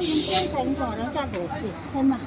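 A short, loud hiss lasting about half a second at the start, followed by a voice.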